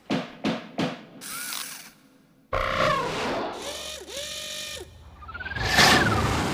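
Cartoon robot sound effects: three sharp mechanical clicks in the first second, then whirring servo-like sounds that glide up and down in pitch. Near the end comes a whistle-like tone that rises and then falls as the robot topples over.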